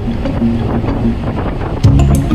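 Wind buffeting the microphone of a camera on a moving bicycle, an even rushing noise, with steady background music under it.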